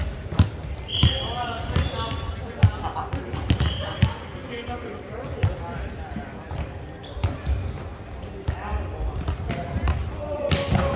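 Volleyballs being hit and bouncing on a hardwood sports-hall floor: many sharp slaps and thuds at irregular intervals, echoing in the large hall.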